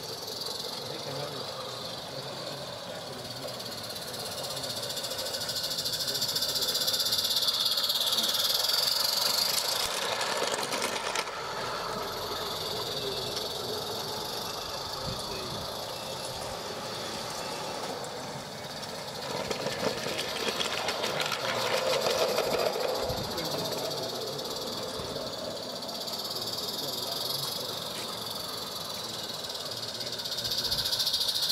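A 16mm-scale live steam locomotive running on a garden railway, with a steady steam hiss and light mechanical noise as it approaches. Voices talk indistinctly in the background.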